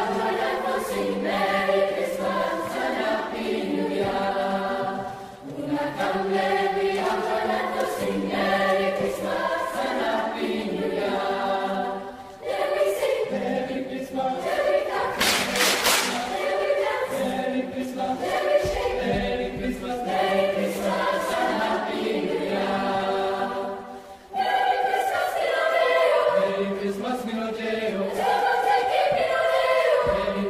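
Youth choir singing a Christmas song in Sierra Leonean maringa style, in phrases broken by short pauses. A short, loud, noisy burst comes about halfway through.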